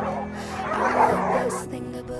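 Dogs barking and yipping excitedly, loudest about a second in, over a pop song.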